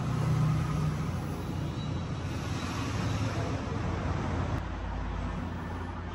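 Steady low background rumble with a constant hum and even hiss, of the kind road traffic makes.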